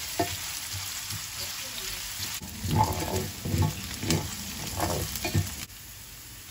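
Diced carrot and onion sizzling in olive oil in a stainless steel pan, stirred with a wooden spoon that scrapes and knocks against the pan. Near the end the stirring stops and only a quieter, even sizzle remains.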